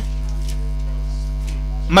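Steady electrical mains hum with a buzzy edge, unchanging in level.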